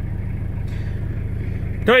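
Toyota Hilux diesel engine idling steadily just after starting, the glow plugs having been preheated before cranking; heard from inside the cab.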